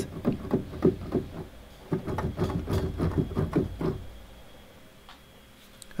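Keys of a MIDI keyboard clattering as they are pressed in quick succession, several taps a second, dying away about four seconds in. No notes sound, only the keys' own mechanical noise, because the USB-to-MIDI adapter has locked up and passes no notes.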